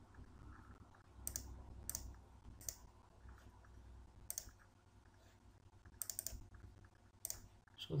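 Computer mouse button clicking: single sharp clicks about a second apart, with a quick run of several clicks about six seconds in.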